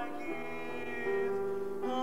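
A hymn sung to keyboard accompaniment, with held notes that change every half second or so. The singers think they started it in the wrong key.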